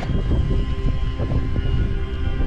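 Wind buffeting an action camera's microphone on an exposed summit: a loud, uneven low rumble.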